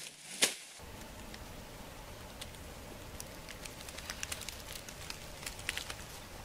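A single sharp crinkle about half a second in. After that come faint, scattered crackles and ticks of dry leaf litter and twigs over a steady low forest background.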